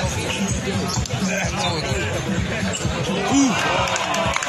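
A basketball bouncing on a court during play, amid the overlapping chatter of a crowd of spectators.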